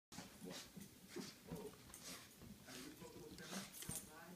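A Shih Tzu making short, soft vocal sounds as it wrestles and shakes a plush toy, with several brief bursts of rustling from the play.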